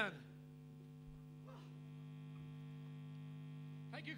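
Faint, steady electrical mains hum from the stage sound system, heard in the gap between songs. The tail of a loud voice dies away at the very start.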